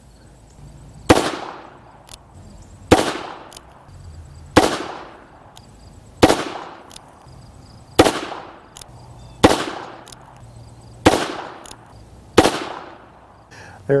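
Eight shots from a Rock Island Armory AL22M revolver in .22 Magnum (22 WMR), fired at a slow, steady pace about one and a half to two seconds apart. Each shot is a sharp crack that trails off in a short echo.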